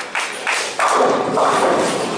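Bowling alley lane noise: a few thuds, then about a second in a sudden loud crash from the lanes that fades away over about a second.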